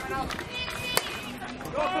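Players' voices shouting and calling across an outdoor pesäpallo field, with one sharp crack about a second in.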